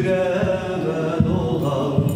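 A man singing a folk song, holding long wavering notes, accompanied by his own strummed bağlama (long-necked Turkish lute).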